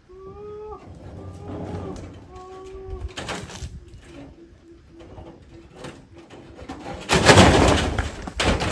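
Dove cooing: three long, steady coos, then a quicker run of short coos. Near the end comes a loud, noisy burst.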